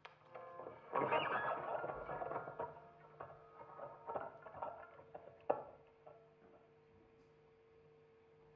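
Electric guitar played quietly through an amplifier: a chord struck about a second in rings and fades, with scattered string and handling clicks. A sharp click comes about five and a half seconds in, then a single note is held ringing steadily.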